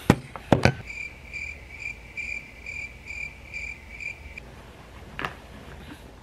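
Electronic alarm beeping: a high tone pulsing about twice a second for about three and a half seconds, then stopping. A few sharp clicks come just before it, and one more near the end.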